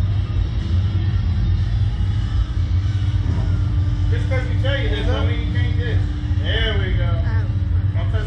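Steady low rumble, with a steady hum coming in about three seconds in and voices in the background from about four seconds to seven.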